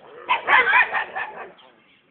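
Dog barking: a quick run of loud barks lasting a little over a second.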